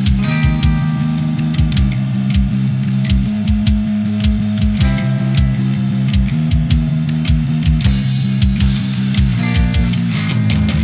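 Instrumental heavy rock passage: a distorted electric guitar riff with bass over a steady drum beat, with kick drum hits at an even pace and no vocals.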